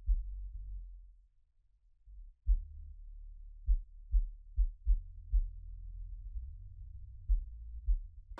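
Deep suspense sound effect: a low bass drone with heavy heartbeat-like thumps at irregular spacing, several coming in quick pairs, and nothing higher in pitch.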